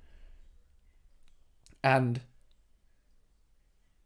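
A quiet pause in a man's talk, with a few faint clicks and one short spoken word, "and", about two seconds in.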